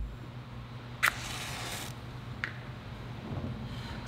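Quiet kitchen room tone with a low steady hum. About a second in there is a sharp click followed by a hiss lasting just under a second, and a fainter click comes later.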